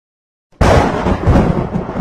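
Thunderclap sound effect: a sudden loud crash about half a second in, followed by deep rumbling that slowly eases off.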